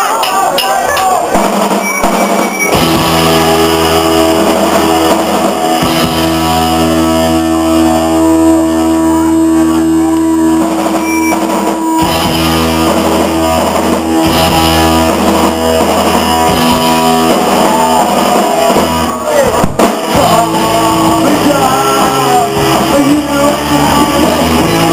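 Live rock band playing loudly: distorted electric guitars holding sustained chords over bass and a drum kit. Voices sound in the first couple of seconds before the full band comes in.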